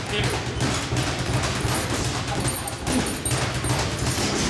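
Gloved punches landing on heavy bags: a quick, irregular run of thuds and slaps.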